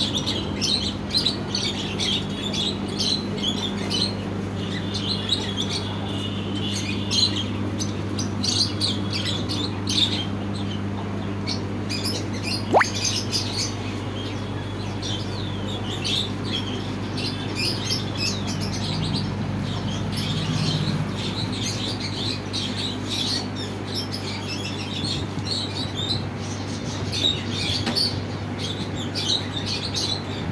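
Many small caged birds chirping busily, their short calls overlapping continuously, over a steady low hum. A single brief rising whistle comes about halfway through.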